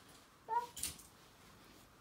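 A single short, high-pitched vocal cry, a brief "ah", about half a second in, followed by a quick rustle.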